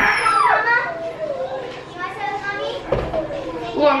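A burst of laughter, then children's voices chattering back and forth.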